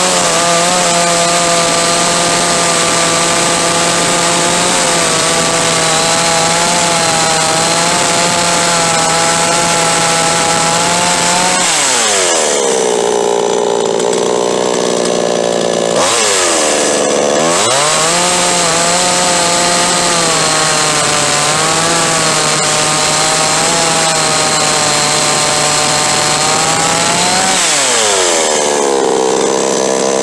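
62cc Chinese clone two-stroke chainsaw running at high revs with a steady note for about twelve seconds, dropping back to idle for a few seconds, revving up again and holding, then dropping back near the end.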